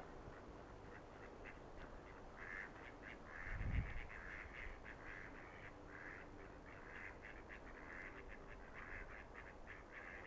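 Ducks on the canal calling in quick runs of short quacks, repeated many times from about one and a half seconds in. A single low thump comes at about three and a half seconds.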